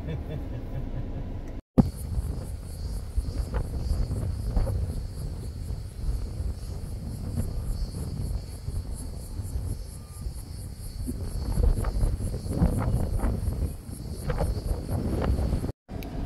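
A steady chorus of cicadas buzzing with an even pulse, over a low, gusting wind rumble on the microphone.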